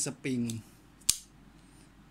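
A single sharp metallic snap about a second in: a Browning F123 folding knife's spring-assisted blade flicking open on its flipper and locking.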